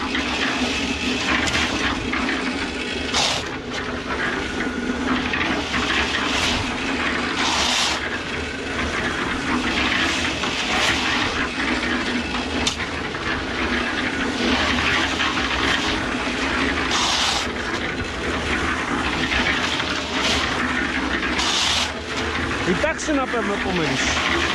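A 150-litre drum concrete mixer running with a steady hum while shovelfuls of sand-and-gravel mix are scraped from a pile and thrown into the turning drum, each one a short gritty scrape every few seconds.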